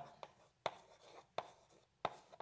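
Chalk writing on a blackboard: a few sharp taps as the chalk strikes the board, with faint scratching between them as the letters are drawn.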